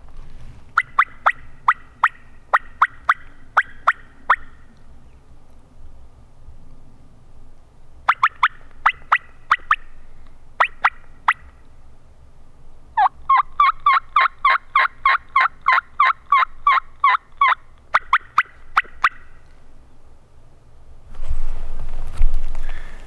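Hen turkey calling done on a mouth call: strings of short, sharp yelps and clucks in several bursts, with one long fast run of cutting about thirteen seconds in. It is meant to strike a gobbler into answering.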